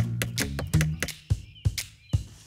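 A series of hammer knocks, several in quick succession, over children's background music with a steady bass line.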